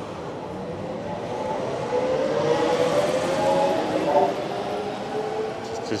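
Electric trolleybus passing, its motor whine swelling to a peak through the middle, rising a little in pitch, then easing off, over street traffic noise.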